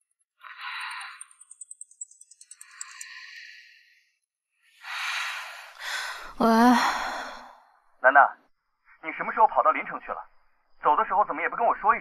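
A woman's drowsy sighs and breaths, then a long wavering groan about six seconds in, followed by short stretches of speech.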